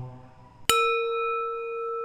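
A single struck metal bell, rung once about two-thirds of a second in, with a sharp attack and then a long steady ring: one clear low tone with fainter higher overtones. Just before it, the chanting voice fades away.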